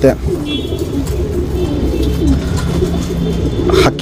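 Domestic pigeons cooing low and steadily.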